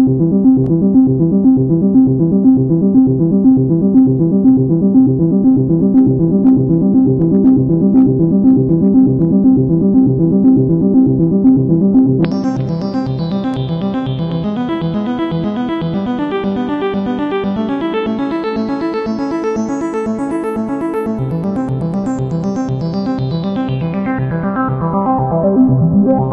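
Korg Nu:Tekt NTS-1 digital synthesizer playing a repeating pattern of notes with reverb. About halfway through the sound turns suddenly brighter, keeps brightening, then dulls again near the end as the filter cutoff knob is turned.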